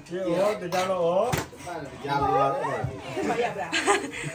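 Mostly voices: children and adults chattering, with one short knock about a second and a half in.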